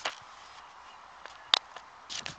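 Rexel Bambi mini stapler pressed down once on a stack of twelve sheets of paper: a single sharp click about one and a half seconds in, with faint handling noise around it.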